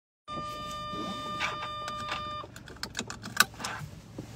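A steady electronic tone sounds for about two seconds and cuts off sharply. It is followed by a run of clicks and rustling as a car seatbelt is pulled across and buckled, with the sharpest click near the end.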